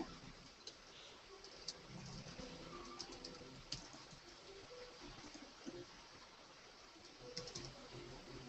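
Near-silent room tone with a few faint, scattered clicks of a computer keyboard.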